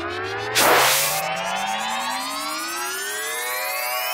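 Electronic riser: a synth tone gliding steadily upward in pitch, with a short whoosh of noise about half a second in. It serves as a transition effect between two music tracks in the edited soundtrack.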